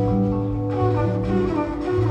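Live band playing an instrumental passage: electric guitar and keyboard holding sustained chords over a bass line that moves about once a second.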